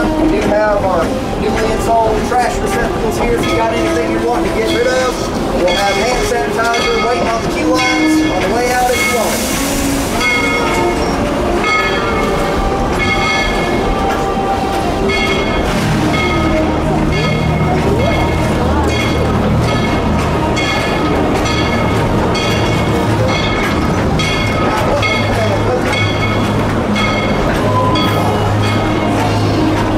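Narrow-gauge steam train cars rolling over jointed track, heard from an open passenger car, with a steady run of wheel clicks and some wheel squeal in the first seconds. There is a short hiss about nine seconds in, and a low steady drone sets in about halfway through.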